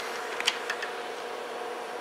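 A steady faint hum from bench electrical equipment, with a couple of light clicks about half a second in as the diode wiring at a terminal block is handled.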